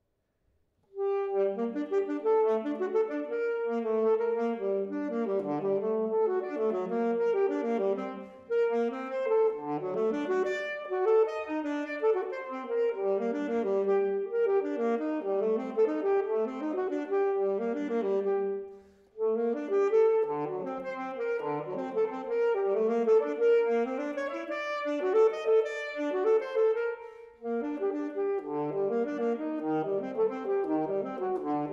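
Unaccompanied alto saxophone playing a fast solo étude-caprice, quick runs of notes in a single melodic line. It enters about a second in, with short breath pauses about 8 seconds in, about 19 seconds in and near the end.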